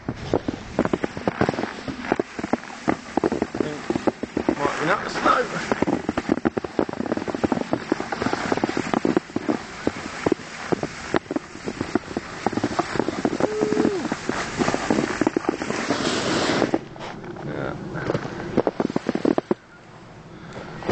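Footsteps crunching over thin, patchy snow, with the knocks and rubbing of a handheld camera carried while walking; the crunching stops about three quarters of the way through.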